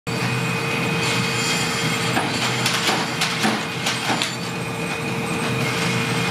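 Steady mechanical rush and constant hum of a blacksmith's forge, with a few light clicks and taps in the middle.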